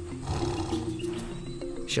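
A big cat growling low, over a soundtrack of held music notes.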